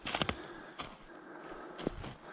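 Footsteps crunching through dry grass and pine litter on a forest slope, about one step a second.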